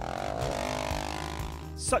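Background music with a low steady drone, joined by a swelling pitched sweep in the first second, with narration starting at the very end.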